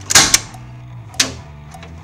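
A switch clicked: two sharp clicks close together near the start and another about a second in, over background music.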